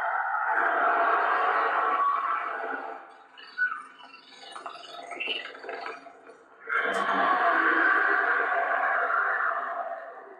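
Cracker Barrel 2024 dragon lamp's built-in speaker playing its recorded dragon growl twice. One long growl fades out about three seconds in. After a quieter few seconds, a second growl starts near the seven-second mark and fades out over about three seconds.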